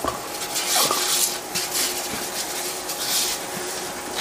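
A hand rubbing oil over parchment paper on a metal sheet pan: repeated rustling, swishing strokes of the paper, with a faint steady hum underneath.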